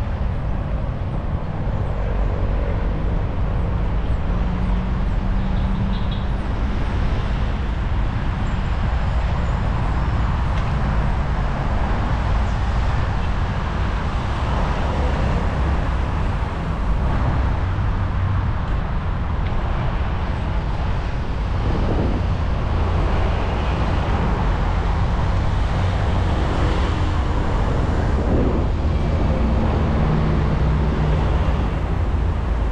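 City road traffic heard from a moving bicycle, with wind on the microphone: a steady low rumble with passing cars.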